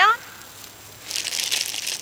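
A clear plastic bag crinkling as a hand rummages in it. The crinkling starts about a second in and is crackly.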